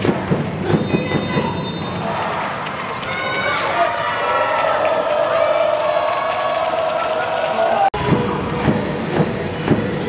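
Cheer music over an arena's loudspeakers with a steady thumping beat and a crowd cheering. From about three seconds in, a held voice or chant rises over it. The sound cuts off abruptly about two seconds before the end and the thumping beat starts again.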